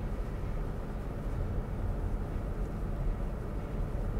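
Inside the cabin of a Mazda6 with the 2.2-litre SKYACTIV-D turbodiesel under gentle acceleration: a steady, quiet low hum from engine and road, with little diesel sound.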